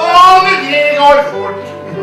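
A song with piano accompaniment: a voice sings a phrase over held piano chords.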